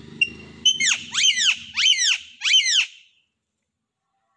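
A parrot screeching: a quick series of harsh calls, each falling sharply in pitch, that stops about three seconds in.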